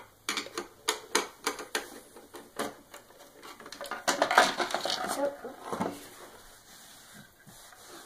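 Screwdriver and hard plastic hoverboard shell clicking and knocking in quick, irregular strokes, then a longer scraping rattle about four seconds in as the top shell half is pulled free.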